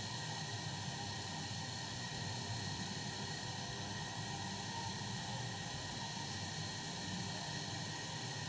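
Steady, faint background hiss with a low hum and no distinct events.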